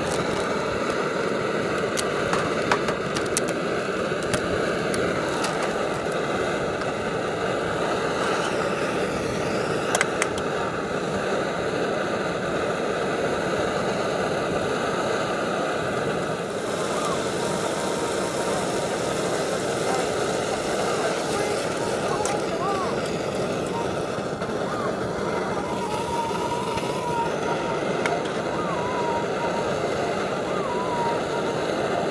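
Primus Omnilite Ti multi-fuel camping stove burning steadily under a frying pan of meatballs, with a few sharp ticks from the cooking meat.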